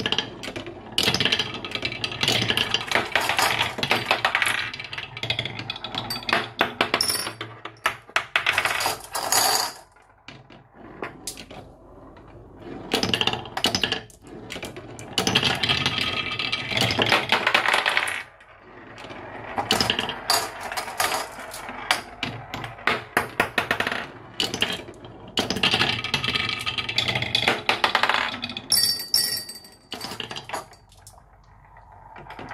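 Glass marbles rolling and clattering down a wooden marble run, a dense rattle of small clicks. It comes in repeated bursts of a few seconds each, as marble after marble runs through the wavy wooden track, with short quieter gaps between.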